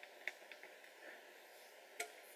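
Near silence: room tone, with one faint tick about a quarter second in.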